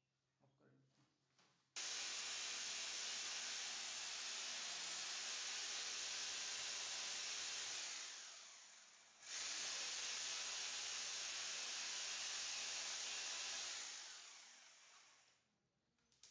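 Corded electric drill boring into a wall, run twice: each run starts abruptly, holds a steady whining drone with a hiss of drilling, and winds down at the end. The first run lasts about six seconds, the second about five.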